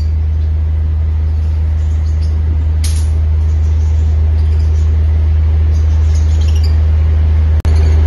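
A loud steady low hum throughout, with one short, sharp lovebird call about three seconds in and a few faint chirps later. The sound cuts out briefly near the end.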